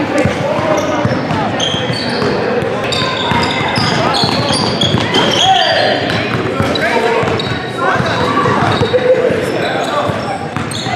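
A basketball game in an echoing gym: the ball bouncing on the hardwood court, short high sneaker squeaks on the floor, and players' voices and shouts.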